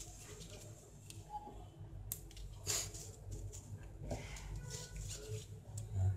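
Handling noise from wires and a small connector: faint rustling with a few sharp little clicks, the clearest about two, three and four seconds in, as a battery is connected to a small charging module.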